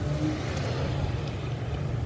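Car engine idling, heard inside the cabin as a steady low rumble with a soft, even hiss over it.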